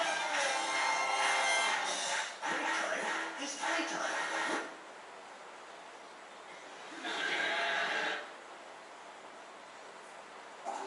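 Television sound of a music performance with singing that cuts off about four and a half seconds in, as the TV is switched over. After a stretch of quiet room tone, a short burst of TV sound comes around seven seconds in and stops after about a second.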